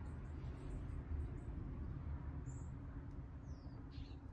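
Quiet outdoor background: a steady low rumble, with a couple of brief faint high chirps about two and a half and three and a half seconds in.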